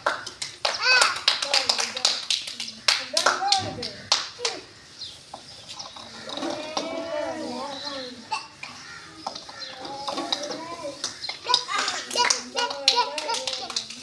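Children talking and calling out over one another, with scattered hand claps.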